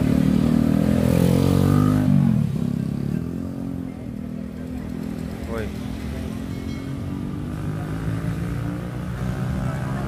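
A motorcycle engine running close by, loud for the first two seconds, then its pitch drops and it fades away. A busy street-market background of voices follows, with a short shout of "woi" about five seconds in.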